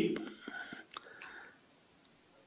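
A man's voice trailing off, followed by faint breathy, whisper-like sounds and a few small mouth clicks, then complete silence for about the last half second.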